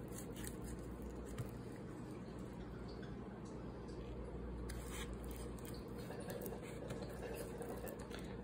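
Faint handling noise: gloved fingers working a greased piston and wrist pin, with a few light clicks over a steady low hum.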